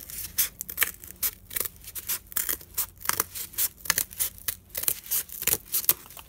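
Scissors cutting through corrugated cardboard in a quick run of snips, about two or three a second, trimming a strip off the bottom edge of a cardboard piece.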